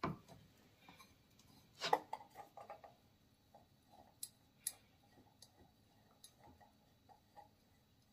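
Scattered light clicks and taps of a metal paper towel holder's rod and base being handled and twisted together, with a sharper knock about two seconds in.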